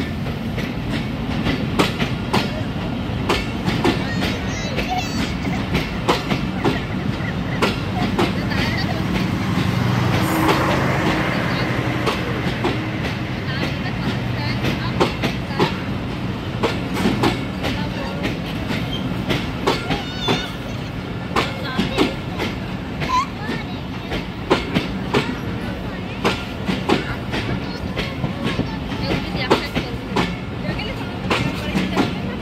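Passenger train coaches rolling past at close range: a continuous low rumble with a dense, irregular clatter of wheels over the rail joints.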